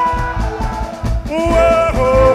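A live reggae band plays loudly, with a heavy bass line and drum kit under a held melody line that steps between notes.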